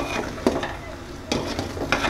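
A metal spatula stirring and scraping inside an aluminium cooking pot, with three sharp scrapes across the two seconds. This is a batch of uunsi (Somali incense) being stirred as it cooks.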